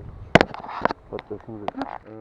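A sharp click about a third of a second in, followed by several smaller clicks over the next second and a half, under faint, indistinct voices.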